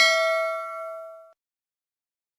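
Bell 'ding' sound effect marking the click on the notification bell icon. It rings with several clear tones at once and fades out over about a second and a half.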